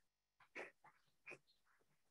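Near silence, broken only by a couple of faint, brief sounds about half a second and just over a second in.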